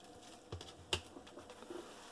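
Two small clicks, about half a second and a second in, as a rigid plastic card holder is handled and set down on a countertop.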